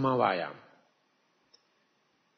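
A man's speaking voice trailing off in the first half-second, then near silence with a single faint click about one and a half seconds in.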